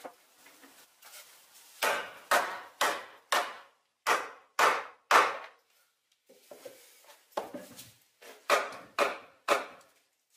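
A mallet striking green wood poles, knocking the rungs of a rustic stick-furniture frame home into their drilled holes. About a dozen sharp blows, roughly two a second, in two runs with a short pause between.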